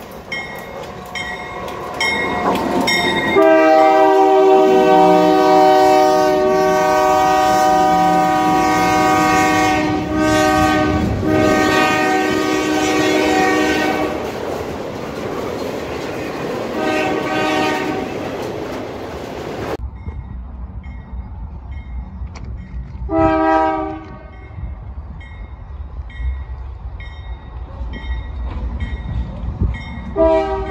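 Nathan K3LA three-chime air horn on a Union Pacific GE C44ACCTE locomotive, sounding one long blast of about ten seconds, a short blast a few seconds later, then more short blasts, over the steady clang of the locomotive bell. A freight train's low rumble and wheel clatter run underneath.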